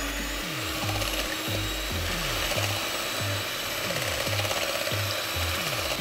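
Electric hand mixer running steadily, its beaters whisking a runny flan batter in a stainless steel bowl.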